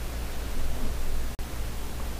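Steady hiss with a low rumble underneath, cutting out for an instant about a second and a half in.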